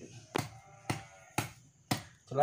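A knife blade tapped against a thin upright rod, four sharp taps about twice a second.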